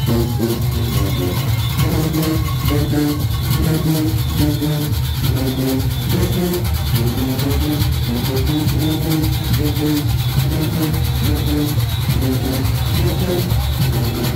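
Junkanoo band playing: brass horns carry a stepping melody over a dense, steady drum beat, loud and close up.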